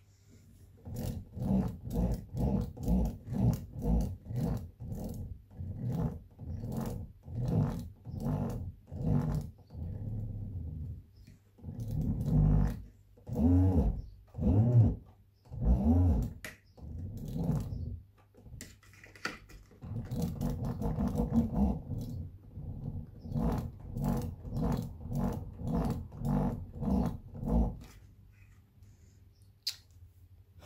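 Fisher & Paykel SmartDrive washing-machine motor turned by hand with its phase wires shorted together, growling in rhythmic pulses about two a second as the shorted windings brake it magnetically. Near the middle the growl gets louder and rises and falls in pitch.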